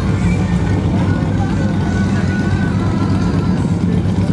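Several Harley-Davidson V-twin motorcycles idling together, running steadily and loudly.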